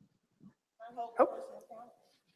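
Speech only: one short word, "Hope," called out by a listener.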